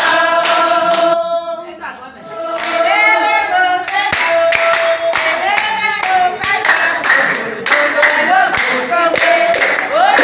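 A group of women singing together to steady rhythmic handclapping; singing and clapping drop away briefly a little after a second in, then start up again.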